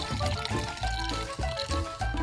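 Carbonated cola (Coke Zero) poured from a can into a glass of ice and rum, with background music and a pulsing bass beat playing over it.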